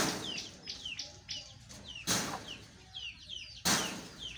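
Small birds chirping over and over with short falling chirps, and three short, loud rustling bursts, the first at the very start, one about two seconds in and one near the end.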